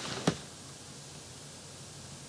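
Steady faint hiss of room tone, with one brief knock just after the start as the plastic stitching frame is handled.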